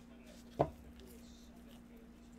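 A single sharp knock on the tabletop about half a second in, as a stack of trading cards and their box are handled and set against the table, with a faint steady hum underneath.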